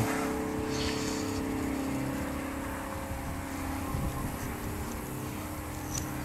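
A steady, low engine hum from a machine running some way off, with a slow pulse in its lowest notes. A few faint ticks and scrapes come from soil being worked by hand.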